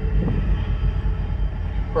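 Union Pacific diesel locomotive pulling a string of tank cars slowly out of the yard: a steady low rumble.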